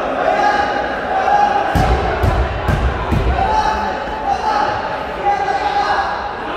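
A ball bouncing four or five times on a hardwood gym floor about two seconds in, over the chatter of players and spectators in the hall.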